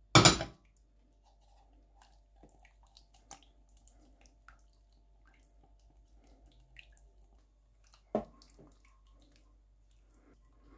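Silicone spatula working in a nonstick pan and a small bowl, with a loud knock at the start and another about eight seconds in. Between them come faint scrapes and ticks as hot goulash sauce is stirred into sour cream in the bowl to temper it.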